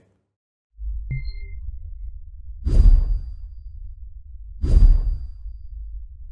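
Title-card sound-design effects: after a short silence a low drone starts, a sharp ping with a ringing tone hits about a second in, and two whooshes follow about two seconds apart over the drone.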